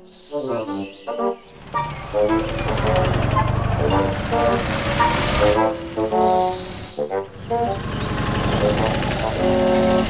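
A sidecar motorcycle's engine running as the combination rides along the road, a low rumble with a rapid pulsing beat, from about two seconds in, under background music. A few words of speech come first.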